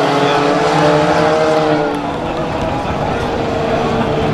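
Several four-cylinder tuner race cars running on a dirt track, their engines overlapping, with the pitch slowly rising and falling in the first couple of seconds.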